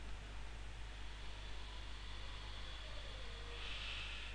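Steady background hiss with a low electrical hum from the recording microphone, with no distinct events: room tone.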